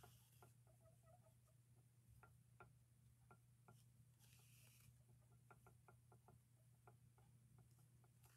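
Near silence: faint scattered ticks and a brief soft rustle about four seconds in, from hands stitching a crocheted bootie seam with yarn, over a low steady hum.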